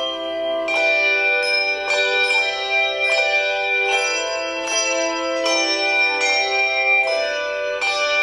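A handbell choir ringing a piece: chords of handbells struck about every second, each left ringing on into the next.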